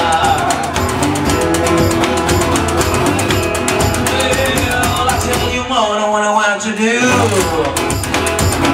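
Live blues: a washboard scraped and tapped as the rhythm, with a metal-bodied resonator guitar and a man singing. The low end drops out briefly about six seconds in.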